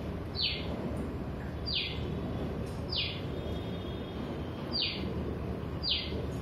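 A bird calling from the film's soundtrack, heard through the hall's speakers: five short notes, each sliding quickly down in pitch, about one to two seconds apart, over a steady background hiss.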